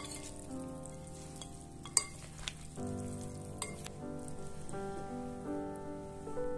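Background music with sustained notes over the wet rustle of grated potato being stirred in a glass bowl, with a sharp clink of a metal spoon against the glass about two seconds in and a few lighter clicks after.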